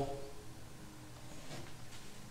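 Mostly quiet room tone with faint handling noise from a sliding compound miter saw being worked by hand, not running: a light click about one and a half seconds in and another near the end.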